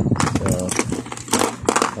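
Steel sockets and tools clicking and clinking irregularly as they are handled in a plastic socket-set case.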